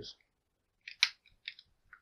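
USB cable plug being pushed into the port of a plastic USB hub: one sharp click about a second in, with a few fainter small clicks and scrapes around it.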